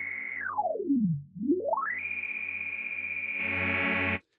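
A low synth note in Arturia Pigments, pulsing about twice a second, played through its 24 dB-per-octave multimode low-pass filter with resonance up. The cutoff is swept down and back up, so the whistling resonant peak glides down to a dull low and then back up to a bright, buzzy tone, brightening further near the end.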